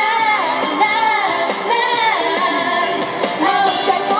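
Female vocalists singing a Japanese pop song live into handheld microphones over loud amplified music.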